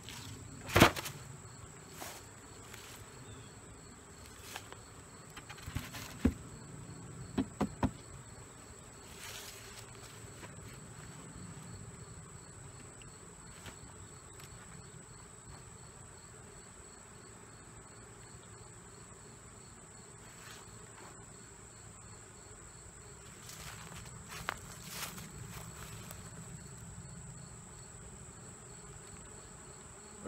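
Steady chirping of insects with a low buzz of honeybees around an open hive, broken by a few sharp knocks of wooden hive parts being handled, the loudest about a second in and a cluster around seven to eight seconds in.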